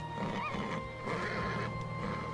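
Soundtrack music with held notes, and a horse whinnying over it.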